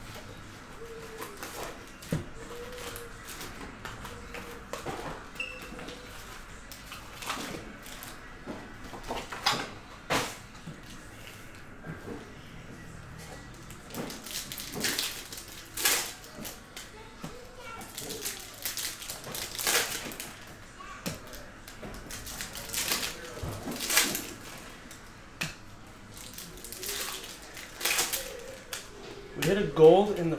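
Foil trading-card pack wrappers crinkling and tearing as packs are pulled from a hobby box and ripped open. The sharp rips and crackles come every second or two, more often in the second half.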